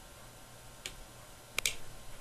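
Three short, soft clicks over quiet room tone: one a little under a second in, then a quick pair near the end.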